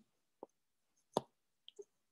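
Near silence broken by two brief faint clicks, about half a second and just over a second in, the second one sharper.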